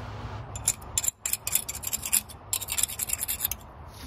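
Metal butter knife scraping barnacles and built-up sea growth off a glass bottle, in a string of quick, irregular strokes with a short pause about a second in.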